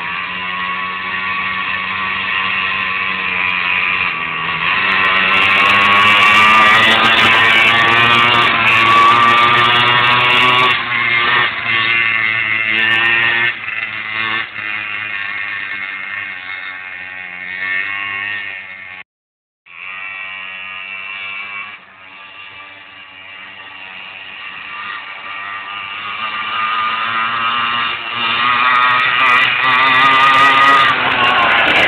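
A mini moto pocket bike's small engine buzzing as it is ridden, its revs wavering up and down. It grows louder over the first few seconds as the bike comes closer, fades as it rides away, cuts out for a moment about two-thirds of the way in, then swells again near the end as the bike comes back.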